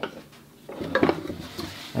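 Light knocks and scrapes of a plastic pail being lifted and tilted against its wooden stand, with a sharper clack about a second in.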